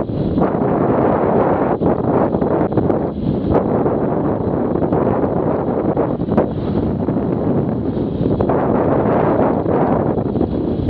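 Steady wind noise rushing over the microphone of a camera on a moving motorcycle, with a few brief dips.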